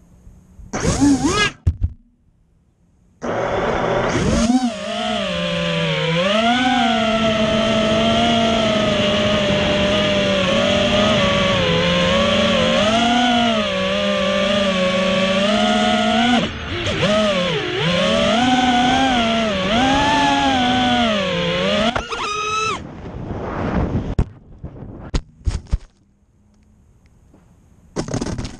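Racing quadcopter's brushless motors and Ethix S3 propellers whining as it flies, the pitch rising and falling with the throttle, after a short burst of spin-up about a second in. The whine cuts off with a quick sweep about 22 seconds in, followed by a few short knocks and blips as the drone crashes into the grass.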